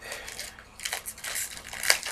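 Trading-card pack wrapper crinkling and being crumpled in the hands, in several irregular bursts with a sharp crackle near the end.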